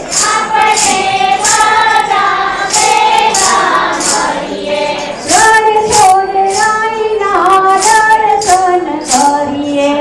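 A group of mostly women's voices singing a Hindu devotional bhajan together, a held, gliding melody over a steady high percussion beat about twice a second.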